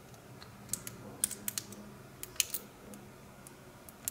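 Light, sharp metal clicks from a brass padlock cylinder being worked with a thin wire tool as the lock is taken apart. They come in an irregular run, thickest in the first half, then thin out.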